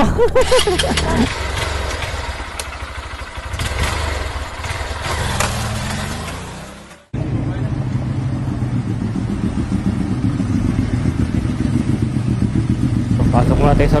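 Street traffic noise with a motor scooter riding past, fading out about halfway through. Then, after an abrupt cut, a steady low rumble.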